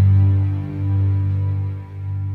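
Music ending on a sustained low droning note that swells and dips about once a second as it dies away.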